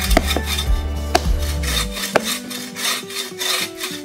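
Bow saw cutting by hand through a dry, weathered log, its blade rasping in a steady back-and-forth rhythm of strokes. Background music with a low steady tone plays underneath.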